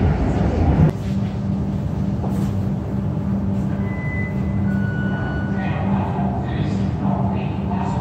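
Interior of a Comeng electric suburban train arriving at a station: a steady rumble with a constant low drone. Brief faint high tones sound about four seconds in, and faint voices come near the end.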